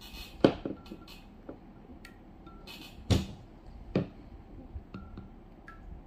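Knocks of dishes on a wooden tabletop as red ceramic bowls and a glass beer mug are handled. Three sharp knocks: the loudest about half a second in, the others about three and four seconds in.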